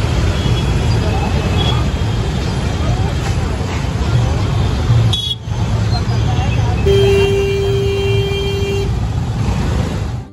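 Busy street traffic heard from a moving two-wheeler: a steady low engine and road rumble, with a vehicle horn held for about two seconds near the end.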